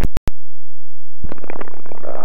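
Sharp clicks on the aviation radio and headset intercom as a transmission ends, then a rough crackling hiss on the channel from about a second in.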